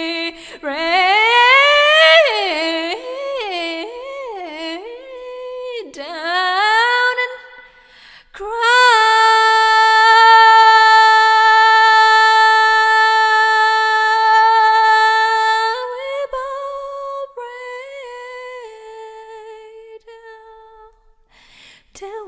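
A woman singing solo a cappella without words: quick runs that swoop up and down for the first several seconds, then one long held note of about seven seconds, followed by softer phrases that fade away.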